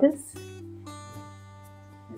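Background music: acoustic guitar with sustained notes, a new chord entering about a second in.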